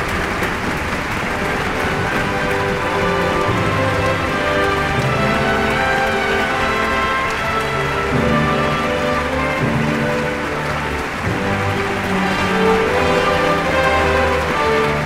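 A large audience applauding and cheering, a dense hiss of clapping, while music of long held notes comes up beneath it and grows stronger.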